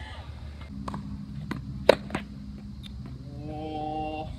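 A few sharp knocks on a tennis court, a tennis ball being struck or bouncing, the loudest about two seconds in, over a steady low hum. Near the end a short held voice sound.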